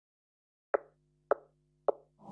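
Three short, sharp clicks evenly spaced about half a second apart, with a faint low hum beneath them: edited-in sound effects opening the backing track of a dance-exercise routine.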